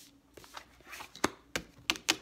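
A deck of tarot cards being shuffled by hand, the cards slapping together in about five sharp, irregular clicks.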